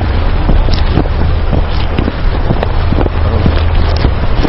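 Loud, steady rumbling noise on the microphone with many scattered clicks and crackles.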